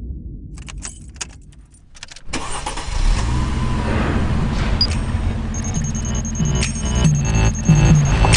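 A few clicks, then a car engine starts suddenly about two seconds in and keeps running, with music playing loudly over it.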